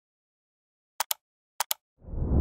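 Mouse-click sound effect in a logo animation: two quick double clicks, the first about a second in and the second half a second later.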